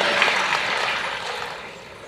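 Audience applause in a hall, dying away.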